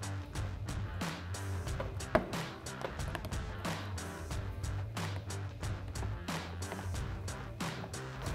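Background music with a steady beat and bass line. A single sharp click stands out about two seconds in.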